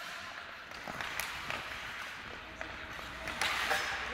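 Ice hockey play heard on the rink: skate blades scraping the ice, with a few faint knocks, the clearest about a second in.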